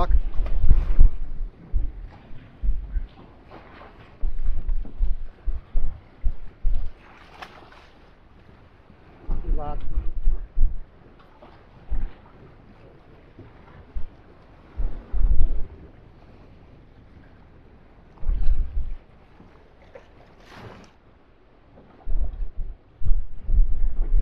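Wind buffeting the microphone in irregular low rumbling gusts, over the wash of choppy sea around a small open boat.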